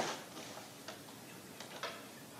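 Three faint short ticks over quiet room tone, from small objects and papers being handled on a courtroom witness-stand ledge.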